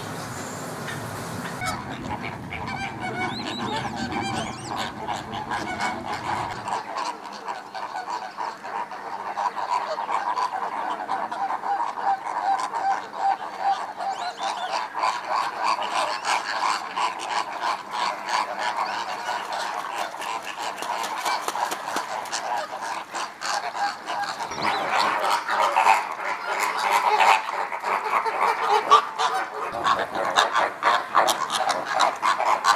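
A flock of flamingos calling together in a continuous honking, goose-like chatter that grows louder and busier near the end. Water trickles briefly at the very start.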